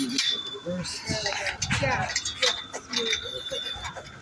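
Light metal clicks and clinks as a cross-brace clamp is fitted onto steel frame tubing and worked by hand.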